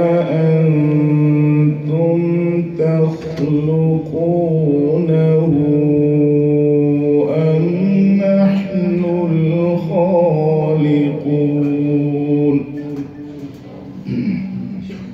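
A male qari reciting the Quran in a melodic tajweed style into a microphone, drawing out long, held notes that waver and glide between pitches. The recitation falls away about a second and a half before the end.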